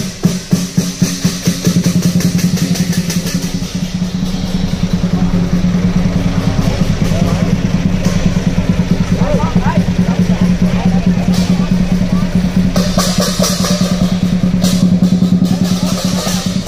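Lion dance drum, a few heavy separate strokes at first, then beaten in a fast continuous roll. Cymbals crash in several stretches near the end.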